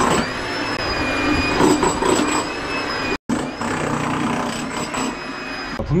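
Continuous power-tool noise from breaking up a hard concrete floor, with a steady high whine over it. The sound drops out for a moment about three seconds in.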